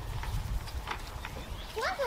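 A child's brief wordless call near the end, gliding up then down in pitch, over a steady low rumble on the microphone.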